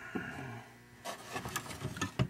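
Faint handling noise: light rubbing with a few small clicks and taps, busier in the second second, as hands move a flashlight over the opened electronic unit.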